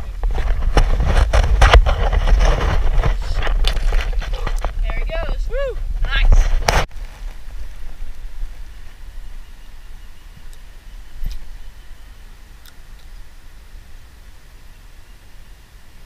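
Loud low rumble with knocks and rustles on a body-worn camera's microphone as it is moved and handled, with a brief voice sound about five seconds in. It stops abruptly about seven seconds in, leaving quiet outdoor background with a few faint clicks.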